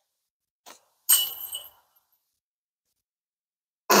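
A disc golf disc strikes the metal chains of a basket about a second in, giving a sharp metallic clink and a brief chain jingle that rings out; it is the sound of a long putt landing in the chains. A faint tap comes just before it.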